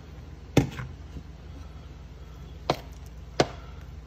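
A metal spoon knocking against the side of a metal saucepan while stirring soup: three sharp knocks, the first and loudest with a brief ring, over a low steady hum.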